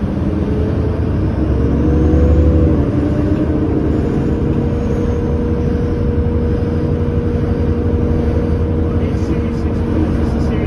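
Interior drone of a New Flyer C40LF bus's Cummins Westport ISL G natural-gas engine and drivetrain while driving: a loud, steady low rumble with a humming tone. It swells briefly about two seconds in, then settles to an even pitch.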